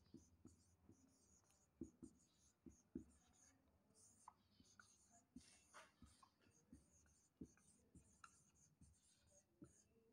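Faint marker pen writing on a whiteboard: scattered short taps and scratchy strokes as the letters are written.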